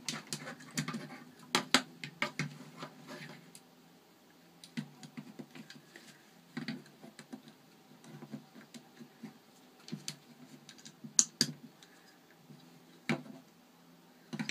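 Plastic Lego bricks clicking and clattering as pieces are handled and pressed onto a model, in scattered irregular clicks with a couple of sharper, louder ones.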